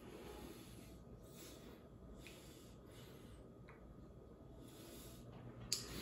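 Faint repeated sniffing and breathing as a man noses a glass of stout, in several short breaths, with a light click near the end.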